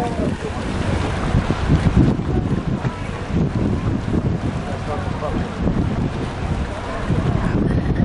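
Wind buffeting the camera microphone in an uneven low rumble, with faint voices in the background.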